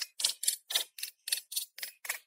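Pick hammer chipping at a stone block in quick, even strokes, about four a second, each a short sharp crack of steel on rock.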